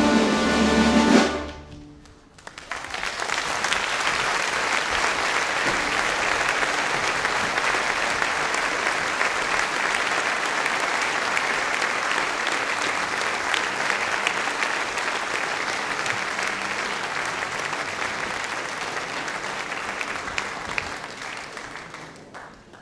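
An orchestra's loud closing chord breaks off about a second in; then a large audience applauds steadily for a long stretch, fading near the end.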